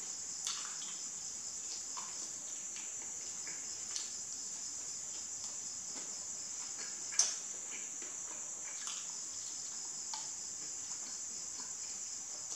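Mouth sounds of eating a fried chicken wing: a few scattered sharp bites and chewing clicks, the loudest about seven seconds in. Behind them, a steady high-pitched chirring of crickets.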